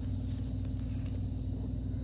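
A steady low hum, with a few faint light ticks of cardboard trading cards being handled and flipped.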